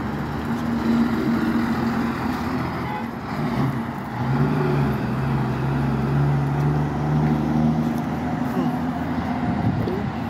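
Road traffic on a multi-lane city road: cars and a flatbed truck driving past. A steady engine drone is strongest from about four to eight seconds in.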